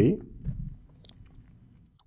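A man's voice trailing off at the very start, then a few faint computer-keyboard clicks as a line of code is typed.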